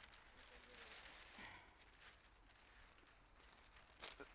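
Near silence: faint outdoor background, with a soft, faint rustle about a second in.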